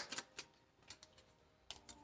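Faint, scattered clicks and taps of tarot cards being shuffled and drawn from the deck, over near silence.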